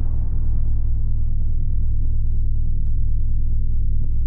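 Sound-design drone under an animated logo sting: a loud, steady deep rumble, with the hiss of a burst just before dying away and a faint thin high tone coming in about a second in.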